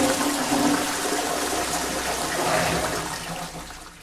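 Crowd applause, a dense clatter of many hands clapping, fading out near the end.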